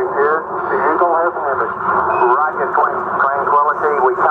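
Narrow-band radio voices: recorded Apollo 11 air-to-ground transmissions from the lunar landing, speech continuing throughout.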